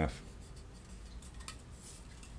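Faint rubbing and light taps of fingers handling a hard plastic model car body, with a small click about one and a half seconds in.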